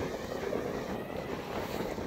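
Small sea waves washing in over a shallow sandy shore, with wind rumbling on the microphone; a steady noise without distinct events.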